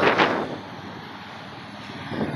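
Steady street traffic noise, an even hum with no distinct events.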